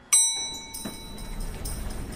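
A single bright elevator chime: one ding at the start that rings for about half a second and fades. Soundtrack music with jingling percussion then comes in and builds.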